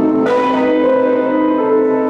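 Instrumental music with sustained, bell-like notes; a new chord is struck about a quarter of a second in.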